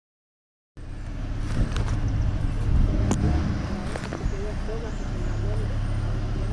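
After a brief silence, a steady low rumble like a vehicle running, with faint, unclear voices and a sharp click about three seconds in.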